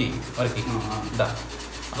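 Sandpaper being rubbed by hand on a bamboo flute: dry, scratchy strokes, with a man's voice talking over them.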